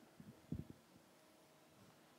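Near silence: room tone in a pause, with a few faint soft clicks about half a second in.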